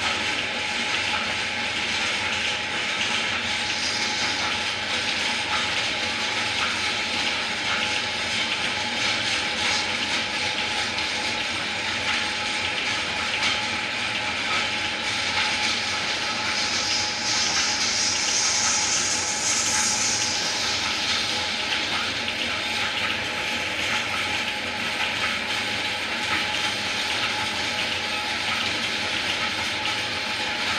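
Large motor-driven lathe running steadily while a cutting tool shaves a tamarind-wood log, a continuous hiss of cutting over the machine's hum. From about 17 to 21 seconds in, the cutting grows louder and brighter.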